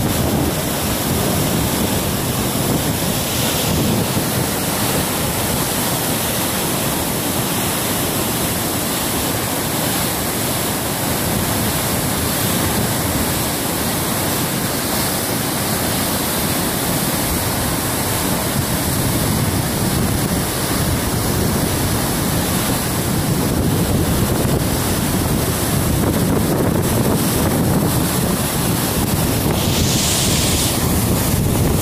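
Steady, loud rush of river whitewater pouring over the brink of a waterfall.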